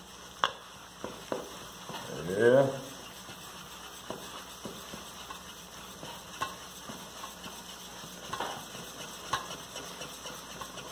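Wire whisk beating an egg, flour and milk batter in a stainless steel bowl: a steady swishing with scattered sharp clicks of the whisk against the metal bowl.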